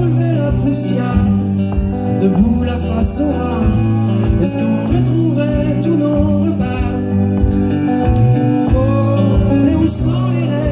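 Live acoustic pop-rock song: a man singing into a microphone while strumming an acoustic guitar, over a steady low beat.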